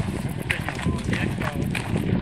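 Footsteps of a group of hikers crunching on a gravel path, with trekking-pole tips tapping the stones, over voices talking.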